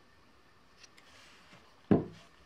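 Faint handling of paper and a small glue bottle with a few light ticks, then one sharp thump on the wooden tabletop near the end.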